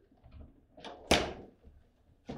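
Foosball table in play: a few sharp knocks of the ball and rods, the loudest about a second in.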